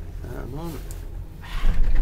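Steady low rumble inside a moving ski gondola cabin, with a brief quiet voice about half a second in and a louder surge of low noise near the end.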